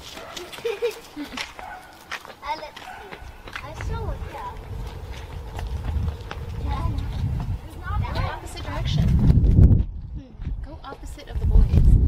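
Children's voices calling out across an open yard, over footsteps and a low buffeting rumble on the microphone that grows from about four seconds in as the camera is carried along.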